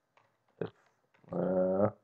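A man's voice making a brief sound and then a drawn-out hesitation sound held at one steady pitch for about half a second, with faint computer-keyboard clicks as he types.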